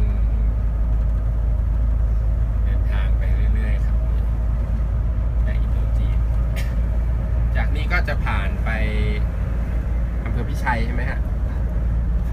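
Tour coach driving at steady highway speed, heard from inside the cabin: a continuous low drone of engine and road noise.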